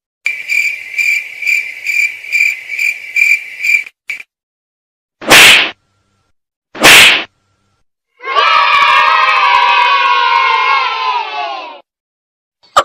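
Edited comedy sound effects. A high electronic tone pulses about three times a second for nearly four seconds, then come two loud sharp hits about a second and a half apart. Near the end a group of voices yells together, the pitch sliding down, for about three and a half seconds.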